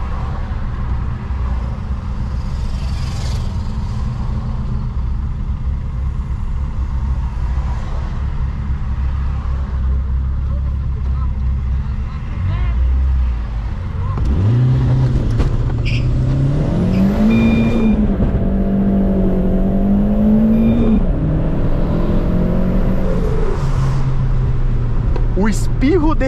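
Turbocharged 8-valve 1.6 EA111 four-cylinder of a 2007 VW Polo, heard from inside the cabin. It idles with a low rumble, then revs up hard as the car pulls away. The rising note dips briefly at two gear changes, with a faint high turbo whistle on top, and falls away as the throttle closes near the end, where the turbo gives a short "tchu".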